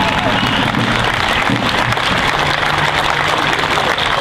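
Crowd applauding and cheering, a steady wash of clapping with some voices mixed in.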